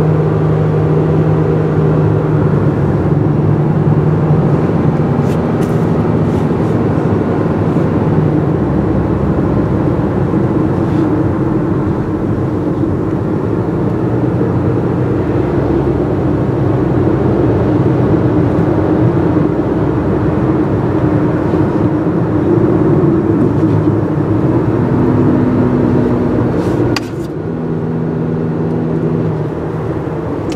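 Steady engine hum and road noise of a car driving along, heard from inside the cabin. It gets somewhat quieter near the end.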